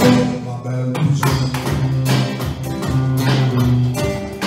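Live instrumental passage of Brazilian popular music: a classical guitar strummed along with an electronic drum kit keeping a steady beat.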